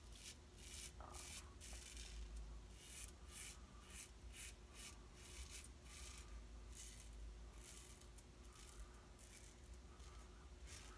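Merkur 37C slant safety razor with a Wilkinson Sword blade scraping through lather and stubble on the neck in short, quick strokes, about two or three a second, faint.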